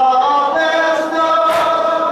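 A large crowd of men chanting a Shia mourning lament (latmiya) together in unison. About one and a half seconds in there is a single sharp slap, the men striking their chests together in time with the chant.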